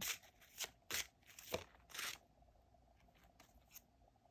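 Deck of oracle cards being shuffled by hand: about five short papery rustles roughly half a second apart in the first two seconds, then only a couple of faint card ticks as a single card is drawn.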